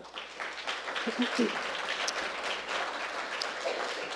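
Audience applauding, with a voice or two heard over the clapping about a second in.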